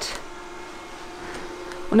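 Yeedi Vac Max robot vacuum running in mopping mode, a steady hum with a faint held tone, in the pause between words.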